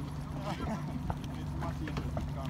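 Steady low hum of a boat engine idling, with short irregular knocks and faint distant voices over it.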